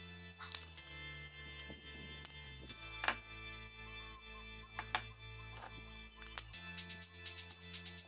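Soft background music, with about five short, sharp clicks as salvaged 18650 lithium-ion cells are handled and pulled apart from their pack. The loudest clicks come about half a second and three seconds in.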